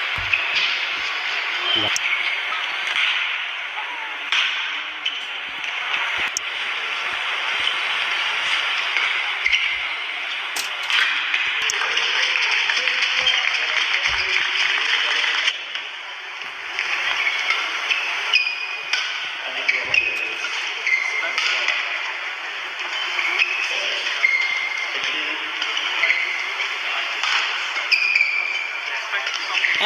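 Badminton rally on an indoor court: sharp shuttlecock strikes off racket strings and short high squeaks of players' shoes on the court mat, over a steady background of crowd voices.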